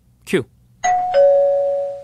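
Two-note "ding-dong" chime sound effect: a higher tone then a lower one, ringing together and fading over about a second. It is a cue marking the start of a question segment.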